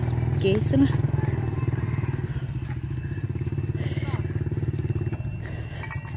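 Small motorcycle engine running steadily at low revs, easing off a little near the end.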